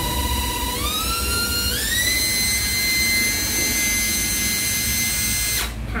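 Panasonic EZ7441 14.4 V cordless drill driver running with nothing in the chuck, a steady motor whine that steps up in pitch twice within the first two seconds as the trigger is squeezed further, holds steady, then stops about five and a half seconds in.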